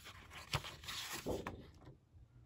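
Sheets of textured scrapbook paper being flipped and slid by hand: a sharp paper snap about half a second in, then rustling and sliding of the sheets.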